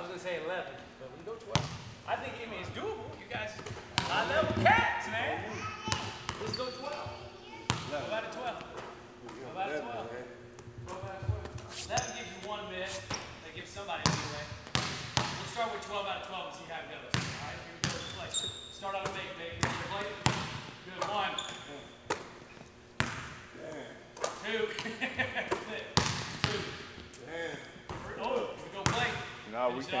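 Basketballs bouncing on a hardwood gym floor, irregular thuds throughout from dribbles and loose balls, with people talking in the background.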